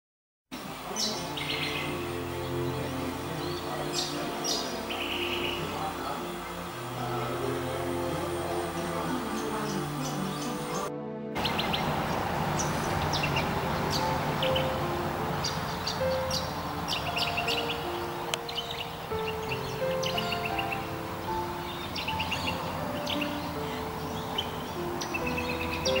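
Birds chirping and calling over soft instrumental music with held notes. The sound cuts out briefly about eleven seconds in.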